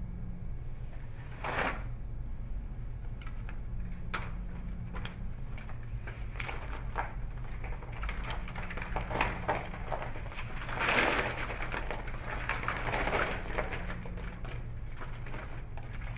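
Playing cards collapsing from a house-of-cards structure pulled down by rope: scattered light clicks of single cards falling, building into bursts of many cards clattering down, the biggest about eleven seconds in.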